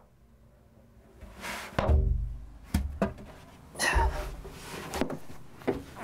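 Three heavy thumps from a plywood crate as the man shut inside pushes its front panel out and it drops onto the grass, with music playing along.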